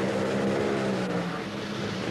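A nitromethane-burning Top Fuel dragster's supercharged V8 engine held at high revs during a burnout, spinning the rear tyres in smoke. It gives a loud, steady drone with a rushing hiss over it.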